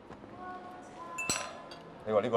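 A china cup clinks once, sharply and with a short ring, about a second and a quarter in, over quiet café background.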